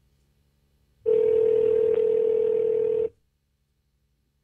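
Telephone ringback tone on an outgoing call: one steady two-second ring about a second in, with hiss on the line, while the called phone has not yet been answered.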